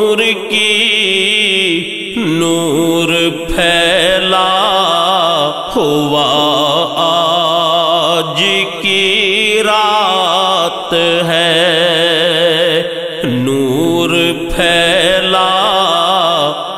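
Vocal interlude of a naat: layered voices chanting and humming without clear words, in long wavering notes that break and restart every second or two.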